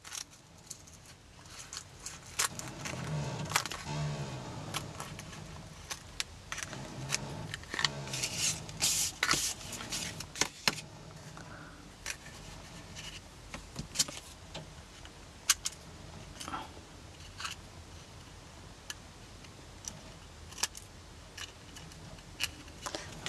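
Small scissors snipping through stiff, glued book-paper papier-mâché, with the crackle of the dried paper form being handled. The snips come as a run of sharp clicks, busiest in the first half and sparser later.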